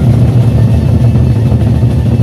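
Gendang beleq ensemble: several large Sasak barrel drums beaten together with sticks in a fast, dense, continuous beat. The sound is loud and heavy in the bass.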